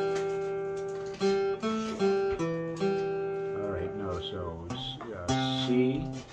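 Acoustic guitar chords strummed slowly one at a time and left to ring, several in quick succession in the first three seconds and another about five seconds in. This is a chord climb being played slowly as a demonstration.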